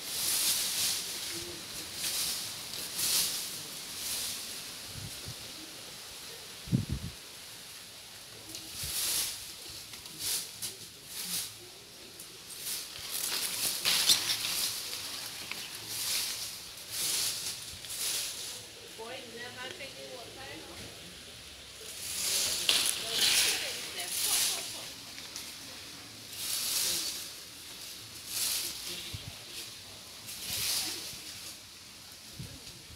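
Bare feet walking on dry fallen leaves and dirt, a short rustle at each step at uneven intervals, with a single low thump about seven seconds in.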